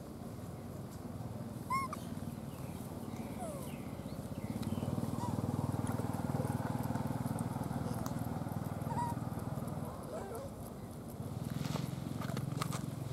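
Outdoor ambience: a steady low rumble, louder through the middle, with a few short, high chirping calls, the loudest about two seconds in.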